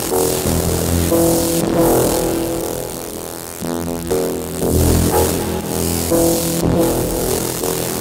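Electronic sound from a light-sensor-controlled sound installation, synthesized in Renoise with the MicroTonic synth: overlapping buzzy droning tones that start, stop and shift pitch as hands pass over the light sensors, with a rapid stuttering buzz about halfway through.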